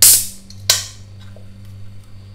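Aluminium soda can being opened by its pull tab: a loud hissing burst as the seal cracks, then a second sharp crack and hiss about 0.7 seconds in as the tab is pushed fully down.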